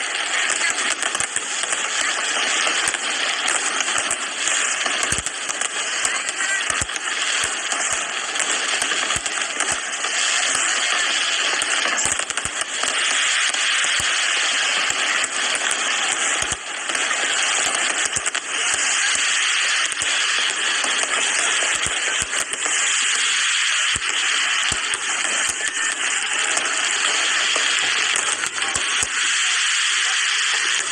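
Fireworks display: a dense, continuous crackling hiss from many bursting shells, broken by frequent sharp bangs at irregular intervals.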